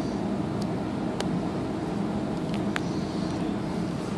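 Steady low background rumble with a few faint, sharp clicks as fingers handle a smartphone and fit a small plug-in adapter at its charging port.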